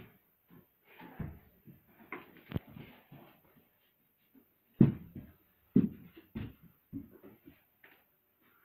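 A series of dull thumps and knocks, scattered at first, then four heavier ones about half a second apart in the second half.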